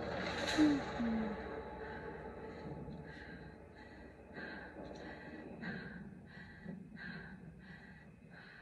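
Heavy, rapid breathing in a horror film trailer's soundtrack, about two breaths a second, after a sharp gasp about half a second in.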